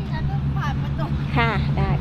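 A woman speaking briefly in Thai, over a steady low hum.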